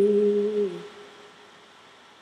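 A woman's voice holding a sung note that steps down in pitch and fades out under a second in, leaving only faint hiss.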